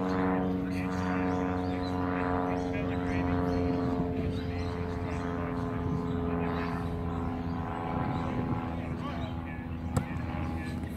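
A steady engine drone with several held tones, its pitch sinking slightly, with faint voices in the background. Right at the end, a single sharp thud as a rugby ball is place-kicked.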